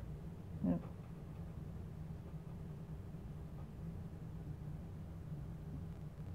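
Quiet room with a steady low hum, and a brief vocal murmur just under a second in.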